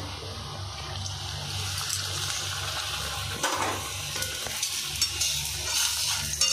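Hot oil sizzling in a kadai as a pea-stuffed kochuri deep-fries: a steady hiss that swells after the first second or so.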